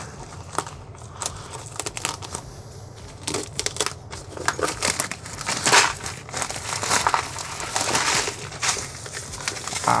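Plastic poly mailer and bubble wrap crinkling and crackling as a package is cut and pulled open. The crackles come irregularly and grow louder and busier in the second half.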